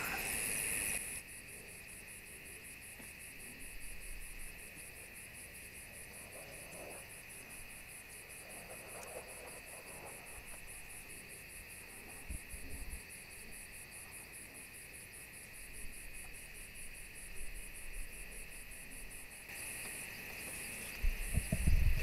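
Night insect chorus of crickets trilling steadily with a fast pulsing shimmer above. It drops quieter about a second in and swells back near the end.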